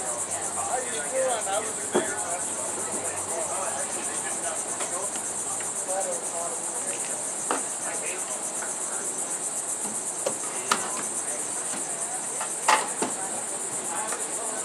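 Steady, high-pitched, finely pulsing chorus of insects. A few sharp knocks and clicks from stage equipment being handled cut through it, the loudest near the end.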